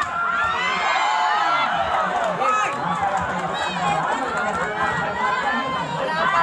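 Crowd of spectators at a volleyball match shouting and cheering, many voices overlapping, during and after a rally.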